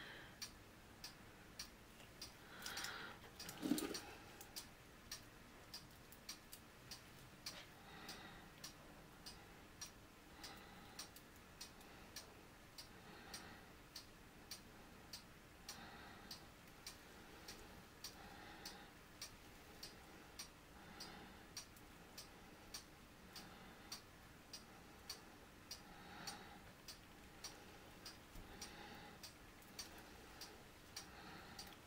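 Faint, steady, regular ticking, about two ticks a second, with a single louder knock about four seconds in.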